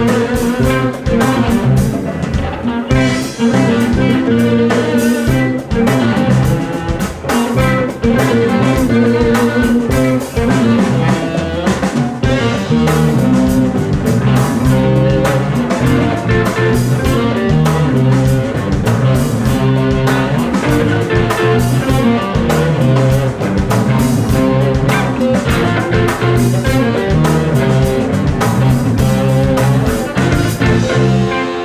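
Live band playing an instrumental blues-funk groove: electric guitars over bass guitar and drum kit, loud and continuous.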